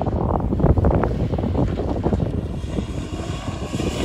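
A driverless Ford Focus running hard with its throttle held open as it bounces across rough ground toward a dirt jump. Thumps and rattles come thick in the first couple of seconds, then the engine drones on more evenly.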